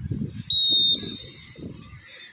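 Referee's whistle blown once about half a second in: a single high, steady blast of about half a second, then trailing off faintly. It is the signal for the server to serve. Crowd chatter runs underneath.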